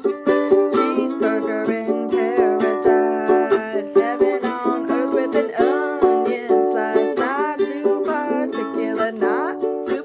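Ukulele strummed in a steady rhythm of chords, with a woman singing over it at times.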